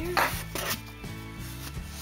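A cardboard box being handled and slid, a short scraping rustle in the first second, over steady background music.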